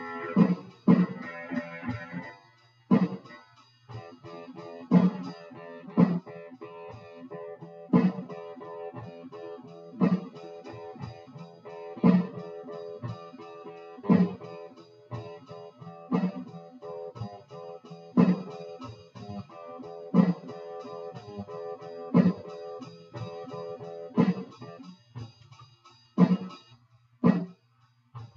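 Electric guitar being played in a repeating jam pattern, with a loud accented hit about every two seconds and held notes ringing between the hits.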